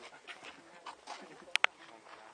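Indistinct background voices murmuring, with two sharp clicks in quick succession near the end.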